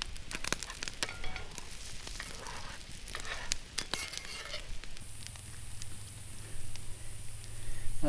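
Eggs frying in hot oil in a cast-iron skillet over campfire coals, sizzling steadily, with frequent scraping and tapping clicks as they are stirred during the first half.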